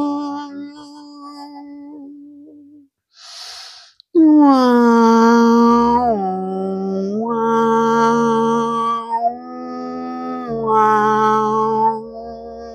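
A woman's voice toning in a meditation to release tension: a long open-mouthed held note fades out, then a breath in about three seconds in. A loud sustained vowel follows, sliding down at the start and stepping between a few held pitches, lower and higher, until the end.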